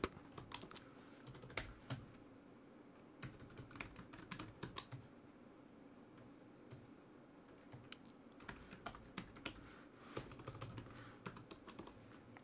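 Faint typing on a computer keyboard: keystrokes come in short runs with pauses between them, with a longer lull in the middle.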